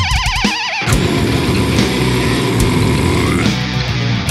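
Death metal recording: a held lead note with a wide vibrato ends about a second in, then the full band comes in with heavily distorted guitars, bass and drums.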